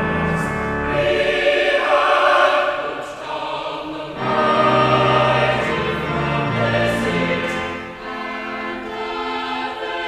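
Mixed choir of men's and women's voices singing a slow, sustained passage over held low bass notes, dipping briefly in loudness about three seconds in and again near eight seconds.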